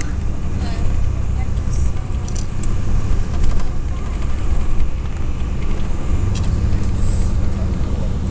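Steady low rumble of a car driving: engine and road noise heard from the moving car.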